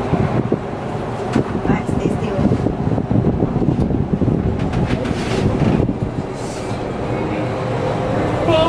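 Enclosed Ferris wheel gondola rumbling and rattling as it moves down the wheel, with irregular knocks and clatter.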